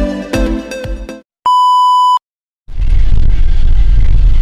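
Electronic dance music cuts off about a second in; after a brief gap a single steady, high electronic beep sounds for under a second. After another short gap a loud, steady rushing noise with a heavy low rumble starts, like wind and motion noise on a phone microphone.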